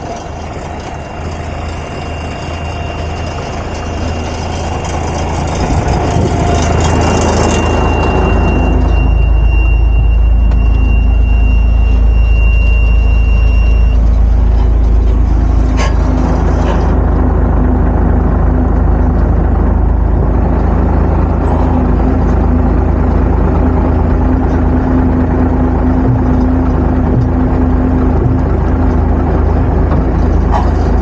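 Diesel engine of an M939A2 military 5-ton truck idling, growing louder over the first eight seconds or so and then holding steady. A single knock comes about sixteen seconds in.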